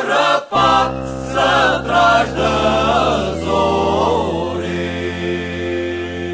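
Portuguese folk song sung by a group of voices in chorus with backing, the melody moving for the first few seconds and then settling about two thirds of the way in on a long held closing chord.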